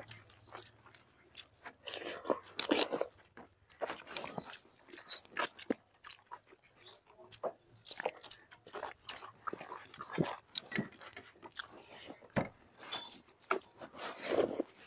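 Eating sounds of people eating rice and chicken by hand: irregular soft chewing, mouth clicks and smacks, scattered through the whole stretch.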